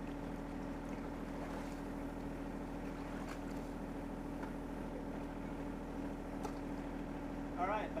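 John Deere 1025R compact tractor's three-cylinder diesel engine idling steadily. A voice comes in near the end.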